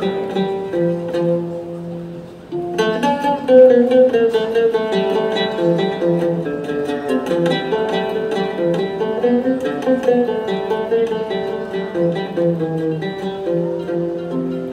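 A string ensemble of ouds and mandolins playing a melody together, plucked notes throughout. About two and a half seconds in, more instruments come in and the music gets fuller and louder.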